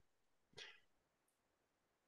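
Near silence: a pause in a video-call conversation, with one faint, brief sound about half a second in.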